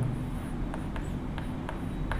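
Chalk writing on a chalkboard: a few short taps and scratches of the chalk as letters are formed, starting a little under a second in.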